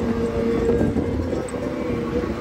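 Side-by-side UTV running while it drives over sand: a steady engine and drivetrain drone over a rough low rumble, with wind noise.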